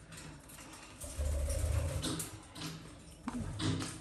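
A stiff pet brush raking through a shedding raccoon's thick coat in a run of short strokes, with a low rumble lasting under a second about a second in.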